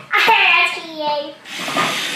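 A child's excited voice: a drawn-out, falling cry or cheer lasting about a second and a half, then fading.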